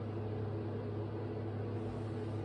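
A steady low hum with a faint hiss under it, unchanging throughout: the background drone of the room, such as a fan or mains hum.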